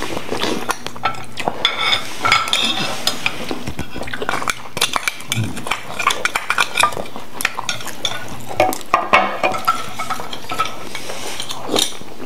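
Metal spoons scraping and clinking against grilled oyster shells and plates as people eat, in short, irregular clicks and scrapes.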